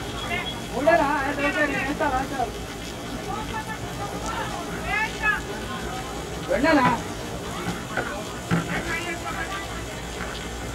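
Distant men's voices shouting and calling out in short bursts at several points, as players call out across a cricket field during play.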